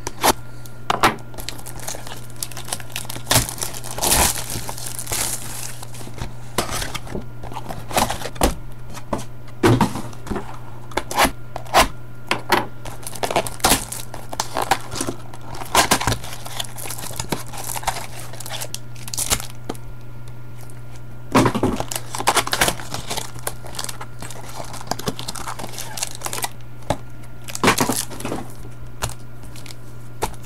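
Wrapping and cardboard of a trading-card hobby box being torn open and foil card packs crinkling as they are handled, in irregular bursts of crackling. A steady low hum runs underneath.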